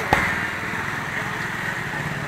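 A small engine running steadily, a low pulsing drone, with one sharp click just after the start.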